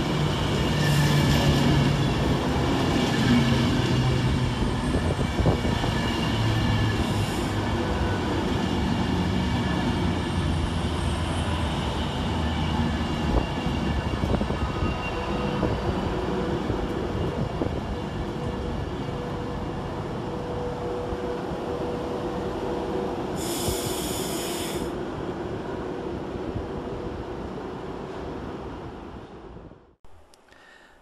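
Avanti West Coast Class 390 Pendolino electric train running slowly into the platform, wheels and brakes squealing as it slows, the noise gradually dying away. A short high-pitched burst comes near the end.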